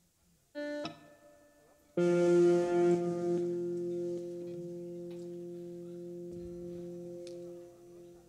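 Electric guitar through an amplifier: a short plucked note about half a second in, then a louder note struck about two seconds in and left to ring, fading slowly over several seconds.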